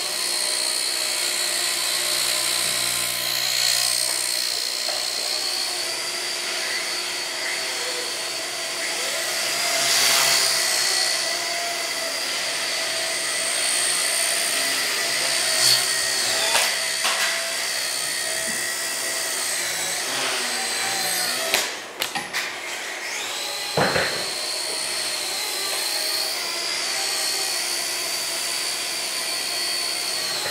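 Blade Nano CP X micro RC helicopter's electric motor and rotor whining steadily in flight, the pitch wavering slightly as it hovers and moves. About two-thirds through, the whine dips briefly with a few sharp clicks.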